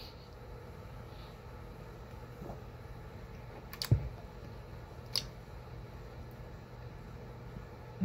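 Quiet indoor room tone with a steady low hum. A sharp click with a low thump comes about four seconds in, and a fainter click about a second later.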